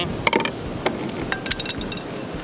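Small metal bait-rigging tackle clicking and clinking as it is handled: a few light metallic clicks, then a quick cluster of ringing clinks near the end.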